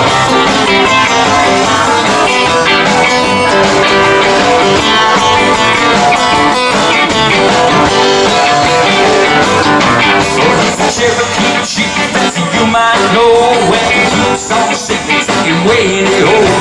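Country band playing an instrumental break in a hillbilly boogie: a steel guitar played with a bar over acoustic and electric guitar rhythm. The playing turns more clipped and choppy in the last third.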